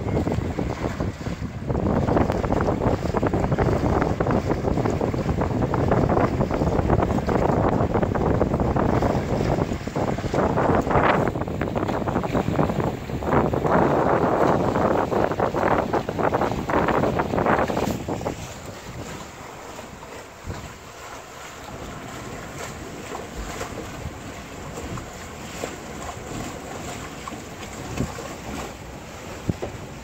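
Wind buffeting the microphone and water washing along a sailboat under way. The rush is loud for the first eighteen seconds or so, then drops to a quieter, steadier hiss.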